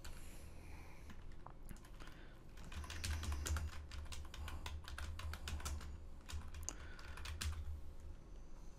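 Typing on a computer keyboard: a quick run of keystrokes from about two seconds in until near the end.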